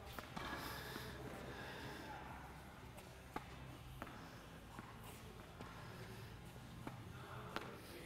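Quiet indoor tennis hall ambience with a few faint, short pocks of a tennis ball on racket strings and court during soft volleys, the loudest about three and a half seconds in.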